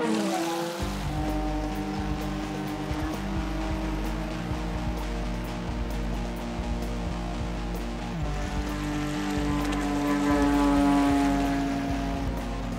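A small boat's motor running steadily on the water, with a music score playing over it.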